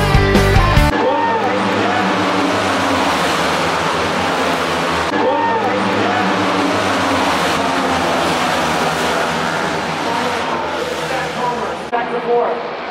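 Music cuts off about a second in. Then comes a steady din of flat-track Pro Singles racing motorcycles, single-cylinder four-strokes, running at speed. Engine notes rise and fall in pitch as bikes pass, most clearly about a second in and again about five seconds in.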